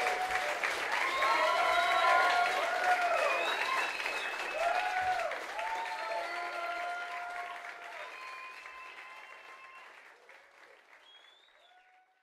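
Audience applauding and cheering, with scattered whoops and shouted voices over the clapping. It dies away gradually to silence near the end.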